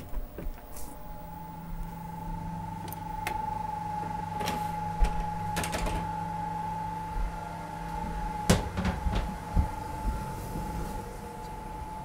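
Steady hum of shipboard machinery with a constant high whine, broken by several sharp knocks and clicks. The low part of the hum drops away at a loud knock about two-thirds of the way through.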